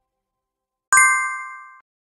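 Notification-bell sound effect: a single bright ding about a second in, ringing out and fading over most of a second.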